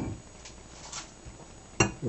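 Faint scraping of a metal fork in a glass measuring jug of couscous salad, with a short sharp knock near the end.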